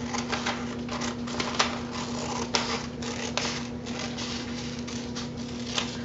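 Scissors cutting through a sheet of paper in a run of repeated short, crisp snips.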